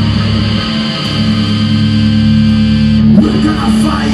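Live thrash metal band playing: loud distorted electric guitars and bass hold steady low notes, with a brief dip a little under a second in.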